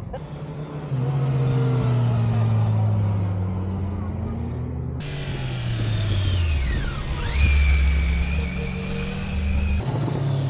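Motorcycle engines running at low riding speed. Partway through, the engine note drops, and a high thin whine rises and then holds steady near the end.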